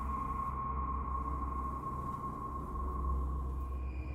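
A steady high-pitched tone held over a low hum, unchanging throughout.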